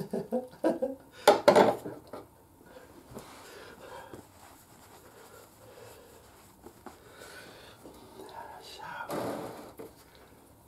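A man's short wordless vocal sounds during the first two seconds and again near the end, with faint clinks and rustles between them from a metal oil-filter wrench being handled and set down in a plastic oil drain pan.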